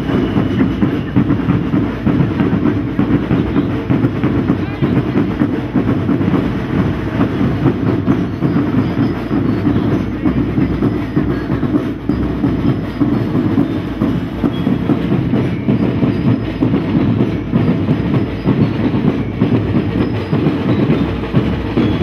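A school marching drum band of snare-type drums playing a fast, steady parade beat.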